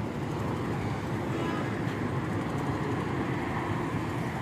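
Steady low rumble of vehicle noise, even throughout, with no distinct events.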